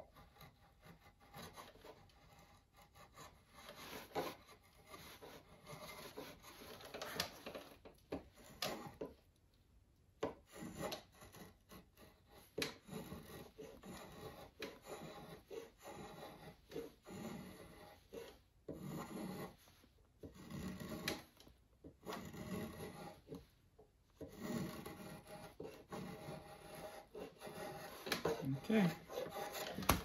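Drawknife shaving a wooden axe handle clamped in a shaving horse: a series of uneven scraping strokes, each peeling off a shaving, with a short pause about nine seconds in.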